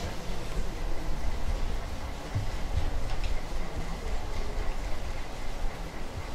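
Low, steady rumbling noise, with a few faint clicks.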